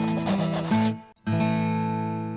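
Closing jingle music: a busy, rough-textured first second, a brief break, then a sustained chord that rings on and slowly fades.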